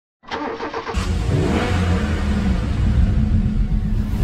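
Car engine turned over by the starter with a quick run of even pulses, then catching about a second in and running with a deep, steady note.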